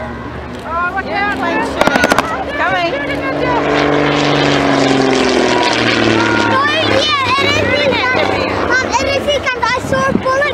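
Messerschmitt Bf 108 Taifun's piston engine and propeller as the plane flies past overhead: a drone that grows louder toward the middle and drops in pitch as it passes. There is a brief crackle about two seconds in, and people talk nearby throughout.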